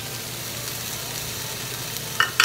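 Diced vegetables frying in oil in a stainless steel sauté pan, a steady sizzle.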